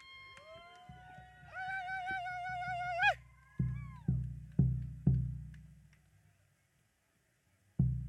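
A few seconds of held pitched tones, the last one wavering, then a large hand drum struck four times about half a second apart, each stroke ringing out, with one more stroke near the end.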